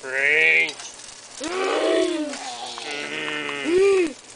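Wordless, drawn-out vocal moans from people playing zombies: about four wavering calls, one after another.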